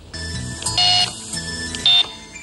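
Short electronic music sting with chiming, bell-like held tones, a louder chord about a second in and a bright hit just before the end.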